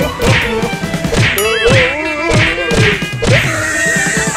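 A rhythmic run of sharp whacking hits, about two a second, each with a low thud. Pitched tones run beneath them, and a short rising whistle-like glide comes about a second and a half in.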